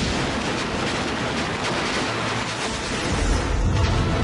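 Movie sound effects of a large explosion: dense, continuous blast noise, with a deep rumbling boom setting in about three seconds in.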